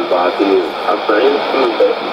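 Speech in Arabic from a shortwave AM broadcast, played through the loudspeaker of a Sony ICF-2010 receiver tuned to 17730 kHz. The voice sounds thin and band-limited, with a faint steady hiss under it.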